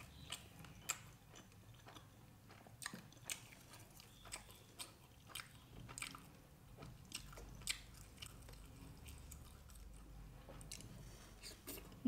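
Faint, close-up chewing of soft food, with scattered small wet clicks and smacks.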